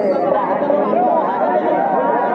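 Crowd of many people talking at once, a steady dense chatter of overlapping voices.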